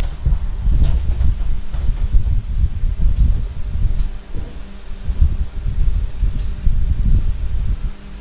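Loud, unsteady low rumbling of wind buffeting a phone microphone outdoors, with a few faint clicks.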